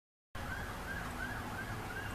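Dead silence for about a third of a second, then a faint outdoor background: a low rumble under a distant siren whose pitch rises and falls about three times a second.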